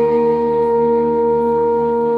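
Trombone, clarinet and accordion holding one long sustained chord, steady and unchanging; the lowest note drops out near the end.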